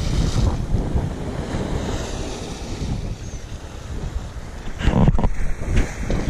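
Wind buffeting the microphone over choppy sea water washing and splashing close below, with a brief louder burst about five seconds in.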